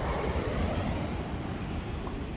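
Wind buffeting the microphone as a steady low rumble, with a rushing hiss that swells at the start and fades by about a second in.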